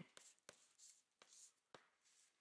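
Chalk writing on a blackboard, faint: a few light taps of the chalk against the board and soft scratching strokes.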